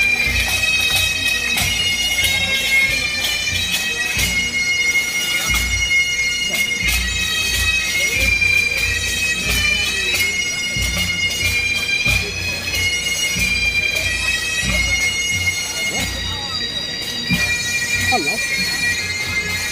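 Bagpipes of a marching pipe band playing a melody over their steady drones, the tune moving note to note throughout.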